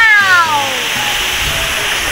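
Steady rush of a waterfall, with the tail of a long, falling call in a person's voice that trails off in the first second.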